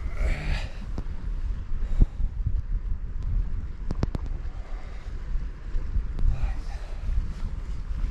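Wind buffeting the microphone as a steady low rumble, with a quick cluster of sharp clicks about four seconds in.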